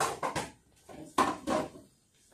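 Dining chairs being shifted, their legs knocking and scraping on a hard floor: a clatter right at the start and a louder one a little over a second in.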